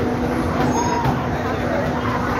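Fairground noise: a steady mechanical hum from the swinging pendulum ride's machinery, with voices calling over it.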